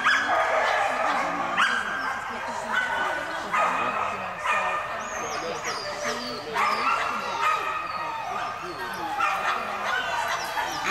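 Dog barking and yipping repeatedly, with people's voices underneath.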